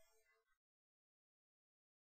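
Near silence: the last faint tail of the background music dies away about half a second in, leaving complete silence.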